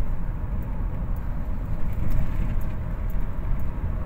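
Steady low rumble of a car driving along a paved road, heard from inside the cabin: engine and tyre noise with a few faint light ticks.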